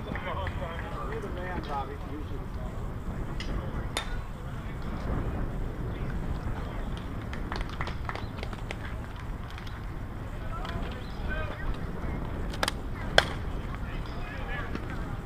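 Outdoor ball-field ambience: a steady low rumble of wind on the microphone, with faint distant voices now and then. A few sharp clicks come through, the loudest a single crack about a second before the end.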